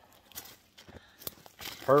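Footsteps on dry forest-floor litter: a few scattered faint crunches and crackles.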